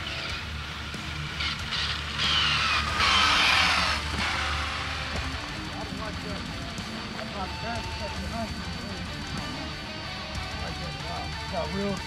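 Background music, with an RC speed-run car whizzing past about two seconds in, its high whine falling in pitch as it goes by.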